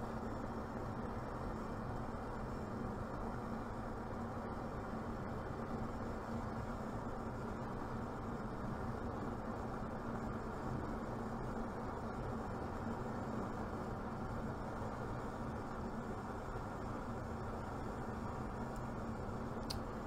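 Propane gas burner flame burning with a steady low rushing noise and a faint hum, fed at reduced inlet pressure of about 6 to 8.5 inches water column.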